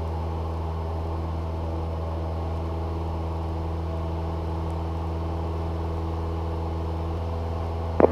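Cessna 172's piston engine and propeller droning steadily, heard inside the cabin, with no change in pitch or level.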